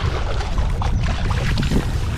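Water splashing and lapping at the bow of a moving kayak, with a steady rumble of wind buffeting the microphone underneath.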